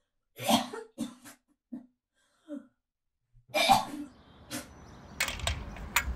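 A person retching and coughing while crouched over a toilet, in a string of short gags, the loudest about halfway through.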